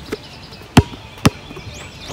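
Basketball bounced on a hard outdoor court: three sharp bounces about half a second apart, the last two the loudest.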